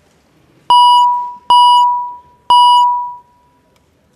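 The chamber's electronic roll-call voting system sounds a signal tone three times, about a second apart. Each tone is one steady pitch that starts sharply and fades away, marking the opening of the roll call vote.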